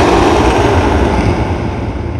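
Harsh, dense noise from an experimental horror noise-ambient track: a loud wall of distorted sound with a deep rumble underneath, which slowly fades.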